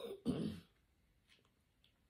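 A woman clearing her throat once: a short, rough rasp in the first half second.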